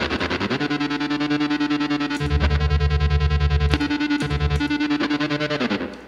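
Overdriven electric guitar chords from a semi-hollow guitar chopped into a rapid, even stutter by a tremolo with speed and depth maxed out, the '65 photocell mode of a Strymon Flint. The chords change a couple of times, and the sound cuts off near the end.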